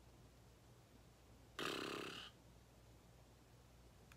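A man's brief throaty vocal sound, under a second long, about a second and a half in; otherwise quiet room tone.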